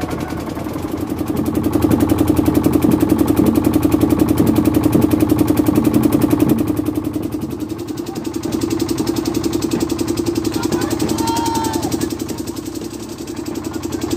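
A boat engine running steadily with a rapid, even thudding beat, louder in the first half and easing off about halfway through, with a few voices calling near the end.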